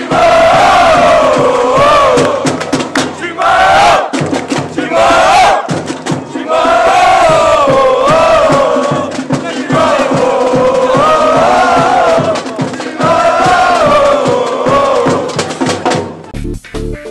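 A crowd of Corinthians football supporters chanting loudly in unison. The song comes in repeated phrases of a few seconds each, with short breaks between them.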